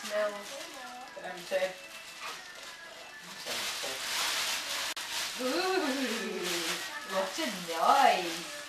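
A thin plastic carrier bag crinkling as it is squeezed and handled, loudest for about a second and a half just before the middle. Around it a young child makes drawn-out, wordless sing-song sounds that rise and fall in pitch.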